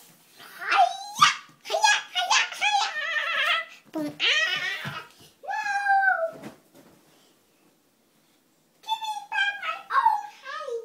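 A young boy's high-pitched squeals and wordless cries in several bursts, the pitch sliding up and down, with a pause about two seconds before the end.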